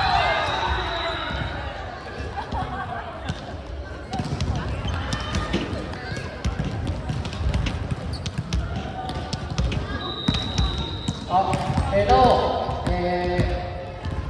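Volleyballs thudding irregularly on a sports-hall floor, with players' voices calling out. A referee's whistle sounds once for about a second, about ten seconds in, followed by shouts from the players.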